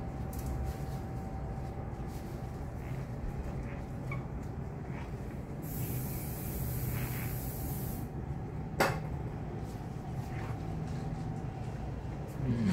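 Steady shop room hum; about six seconds in, a spray hisses for about two seconds, starting and stopping abruptly, and a sharp click follows a little under a second later.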